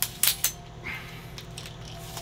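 Metal legs of the Sunpak tripod clicking and clinking against each other as they are handled: three sharp clicks in the first half second with a brief metallic ring, then quieter rattling and handling.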